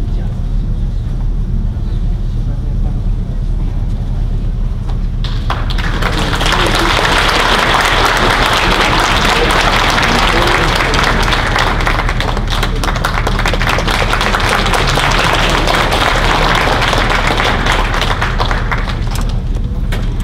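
Audience applause breaks out suddenly about five seconds in, after a stretch of low steady room hum, then builds and carries on evenly.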